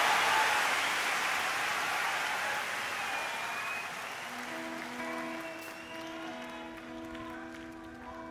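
Concert audience applause dying away. About four seconds in, a keyboard starts playing steady held chords that break and restart, with a few scattered claps still heard.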